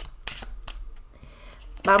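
A deck of tarot cards being shuffled by hand: a run of short, crisp card snaps, thinning out in the second half. A woman starts speaking near the end.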